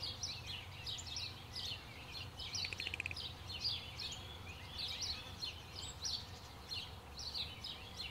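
Small birds chirping in quick, short, high notes throughout, with a brief buzzy rattling trill about three seconds in, over a steady low hum of background noise.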